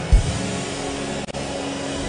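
A congregation praying aloud all at once, a steady wash of many voices, over soft background music with sustained low notes. A brief low thump just after the start.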